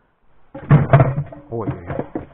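Loud thuds and knocks starting about half a second in, mixed with a man's voice: noise in the fishing boat that, the angler says, bream do not like.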